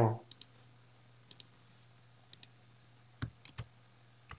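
Computer mouse clicks, each a quick double tick like a button press and release, about once a second, then a few heavier clicks with more low end near the end, over a faint steady hum.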